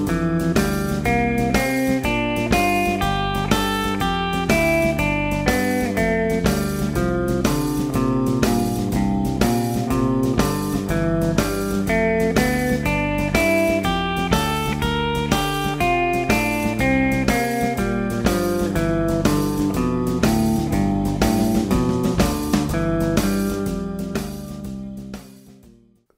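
Guitar improvising a blues line in B over a 12-bar blues backing track with a steady drum beat, switching between major pentatonic on the I chord and minor pentatonic on the IV and V chords. The music fades out near the end.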